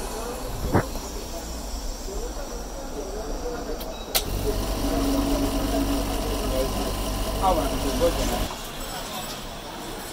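Phone-screen OCA lamination bubble-remover chamber: a sharp click less than a second in, then another click about four seconds in as the machine switches on and runs with a steady hum for about four seconds before cutting off.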